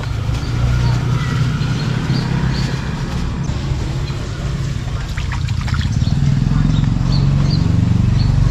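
Clear plastic fish bags rustling and crinkling as they are handled, most clearly about five seconds in, over a steady low rumble. Faint short high chirps come a few times.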